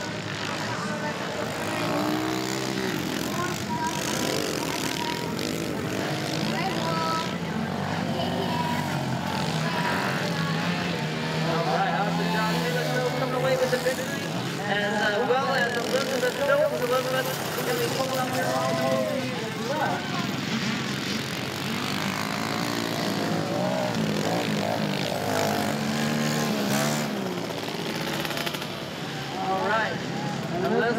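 Small 110cc four-stroke auto-clutch dirt bikes racing on a motocross track, their engines revving up and down in long rising and falling sweeps, with voices in the background.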